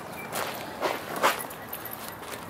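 Footsteps, about three steps, of a person walking up to a van.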